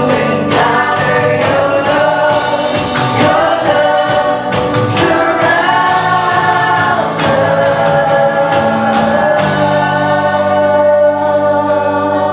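Live worship band playing a slow praise song, with a female lead singer and the congregation singing along over electric guitar and drums. The percussion stops about nine and a half seconds in, leaving held chords under the singing.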